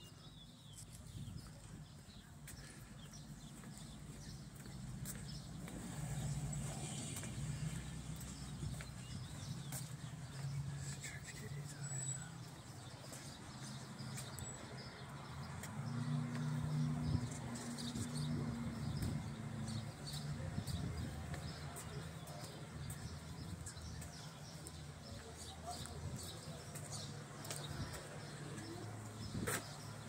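A vehicle engine idling steadily, getting louder toward the middle and then easing off again, with faint distant voices.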